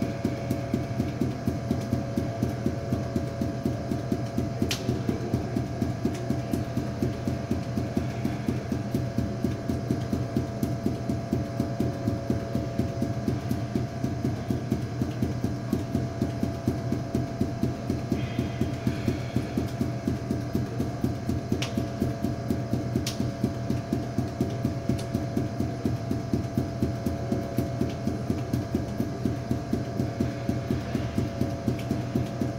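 Five balls force-bounced off a hard floor in a steady, rapid rhythm of thuds, about four bounces a second, over a steady hum, with a few sharp clicks here and there.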